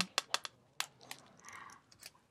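Several faint short clicks in the first second, then a soft breath-like hiss.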